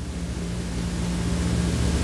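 A steady low electrical-sounding hum with an even hiss under it: the background noise of the room or recording, heard in a pause between sentences.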